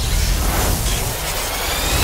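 Film-trailer sound effect: a loud, noisy rush of energy with a faint rising whine, swelling near the end.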